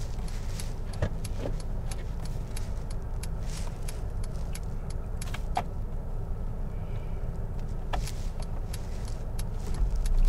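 Car engine idling, heard from inside the cabin as a steady low rumble, with a run of light clicks throughout.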